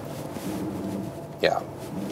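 The Ford Ranger Raptor's diesel engine running steadily with a low drone, heard inside the cabin while the truck crawls downhill under hill descent control.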